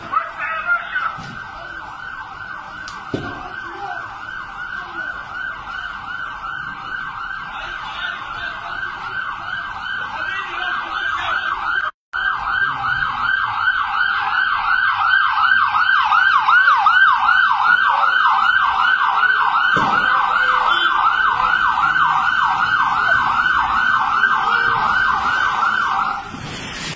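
Emergency vehicle siren sounding a fast yelp, its pitch sweeping up and down about three times a second. It grows louder, with a brief dropout about halfway through.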